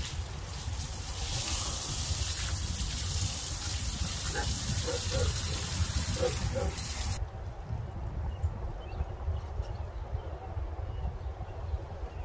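Garden hose spray hitting a Jeep's tire and wheel well: a steady hiss of water that cuts off abruptly about seven seconds in.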